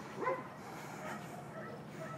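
Faint dog barking: one short bark just after the start, then softer scattered barks and yips.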